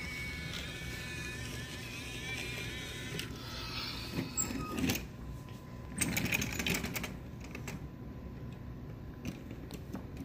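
A small toy-train motor whirring steadily, then wooden toy trains and track pieces clattering as they are handled, with a burst of clacks about six to seven seconds in.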